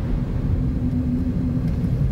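A steady low rumble with a faint droning tone above it, like a vehicle running.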